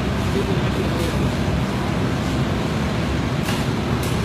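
Steady low background din of a commercial kitchen, with one faint clink near the end.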